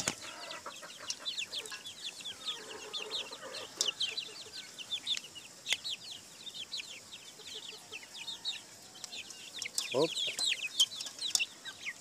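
A flock of young chickens peeping continuously, many short high downward chirps overlapping, as they feed on scattered grain. Scattered sharp clicks run through it, and a brief lower call comes about ten seconds in.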